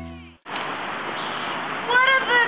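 Music fades out and cuts off; after the cut there is a steady background hiss, and near the end a high voice starts a gliding, bending cry.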